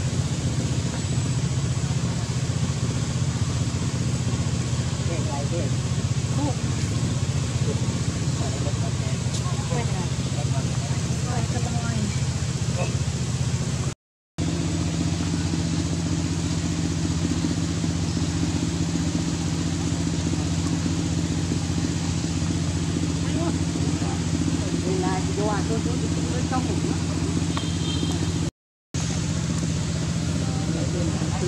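Steady low drone of a motor running, with faint short high calls over it at times. The sound cuts out briefly twice, about halfway through and near the end.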